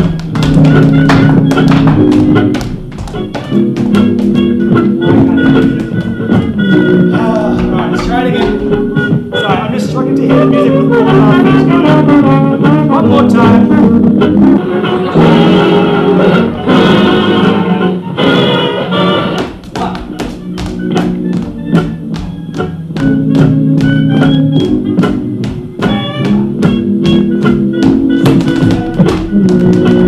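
Old-time jazz band recording played loud through a speaker, with dancers' tap shoes clicking on a wooden floor along with the music.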